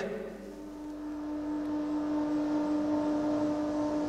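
Wind tunnel fan starting up: a steady mechanical hum with rushing air that grows louder over the first couple of seconds, then holds.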